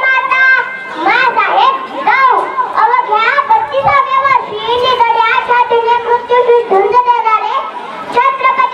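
A young girl reciting a speech loudly into a microphone, in a high voice that rises and falls, with some words drawn out.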